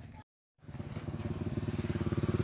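A small engine running steadily with a fast, even putter. It starts just after a brief total dropout of the sound near the start.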